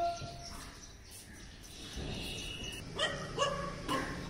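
Three short animal calls near the end, each one pitched and sharp.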